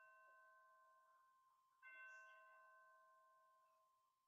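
A bell ringing faintly with several clear tones and slowly dying away, struck again a little under two seconds in.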